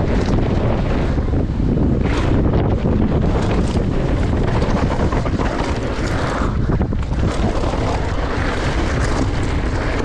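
Wind buffeting the camera's microphone at speed, over the rumble of a Scott Gambler downhill mountain bike's tyres on a rough gravel and dirt track. Frequent small knocks and rattles come from stones, chain and suspension throughout.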